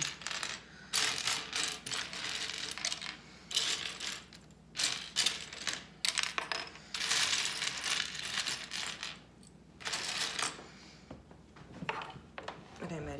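Loose plastic LEGO bricks clattering and rattling as they are raked and pushed by hand across a hard tray table while being sorted, in repeated bursts of a second or so with short pauses between.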